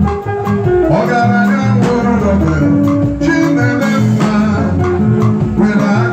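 Live band music: a drum kit keeping a steady beat under guitar and bass guitar lines.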